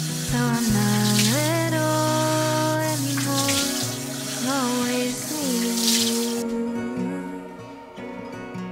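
Bathroom sink tap running and water splashing as hands rinse a face, over a background song with a gliding sung melody. The water stops about six and a half seconds in, leaving the music.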